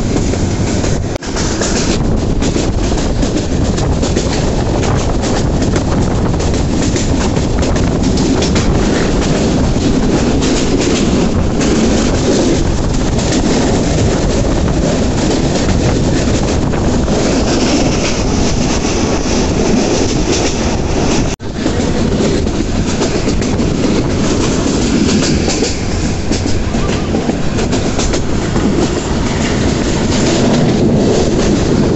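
Passenger train running along the track, a steady loud rumble and rattle of the carriage and its wheels on the rails, heard at an open carriage window. The sound dips briefly twice, about a second in and about two-thirds of the way through.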